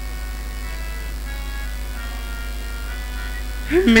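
A steady low electrical hum from the stage sound system, with faint held music notes fading underneath. Near the end, a man's amplified voice begins declaiming.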